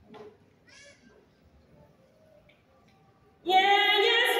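Faint, brief audience sounds in a quiet theatre, then about three and a half seconds in a loud, high operatic sung note starts abruptly and is held with vibrato.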